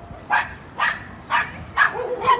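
Miniature pinscher barking repeatedly, four short barks about half a second apart.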